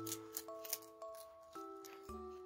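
A rabbit crunching a crisp Chinese cabbage leaf, with short crisp bites a few times a second, over soft instrumental background music with gently held notes.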